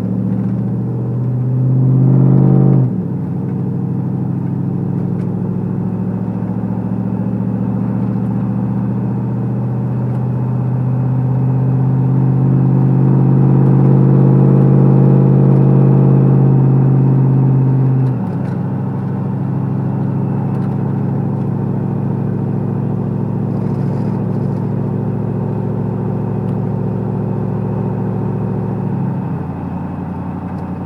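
Pickup truck's engine and road noise heard from inside the cab while driving. The engine note swells under throttle and drops off sharply about three seconds in and again about eighteen seconds in, with a smaller drop near the end, running steadily in between.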